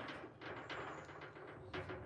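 Faint handling noise from the phone: soft rustles and a few light taps over a quiet background.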